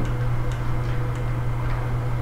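A pause in speech filled by a steady low electrical hum in the room recording, with a few faint, irregular ticks.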